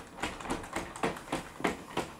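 Weilan BabyAlpha robot dog walking on carpet: a quick, even run of light clicks and taps from its leg joints and feet, about five or six a second.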